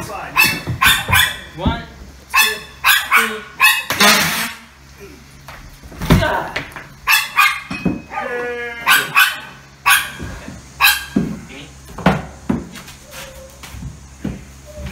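A sheet of chipboard subfloor being pried up off the joists by hand: a splintering crack about four seconds in, a heavy thud about two seconds later, and a creak around eight seconds as the panel lifts free, amid short voice-like exclamations.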